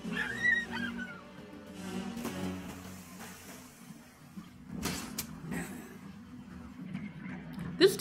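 Film soundtrack music, quiet and steady over a sustained low note, with a short high gliding sound near the start and a brief sharp knock about five seconds in.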